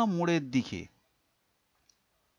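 A voice drawing out the last word of a spoken phrase, ending about a second in, followed by near silence with a faint tick near the end.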